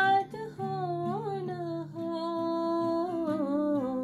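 A woman's voice singing a slow melody in long held notes with slow glides, the pitch sinking near the end, over an acoustic guitar accompaniment.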